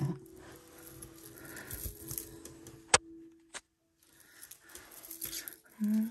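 Faint rustle of tangled gold-tone metal jewelry chains being handled and pulled apart, with one sharp click about three seconds in and a smaller one just after, then a brief dead silence.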